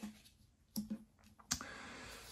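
Playing cards being handled on a wooden tabletop: two crisp clicks of cards tapped or laid down, about three quarters of a second apart, followed by a faint steady hiss.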